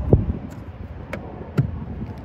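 A few sharp clicks as a car's screw-on fuel filler cap is handled and its fuel door pushed shut. The last and loudest click, about one and a half seconds in, is the fuel door shutting.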